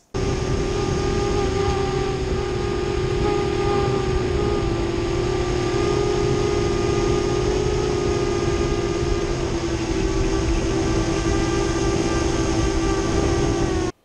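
A 7-inch FPV quadcopter's motors and propellers humming steadily in flight, as picked up by its onboard camera, the pitch sagging slightly now and then, with wind rumble on the microphone.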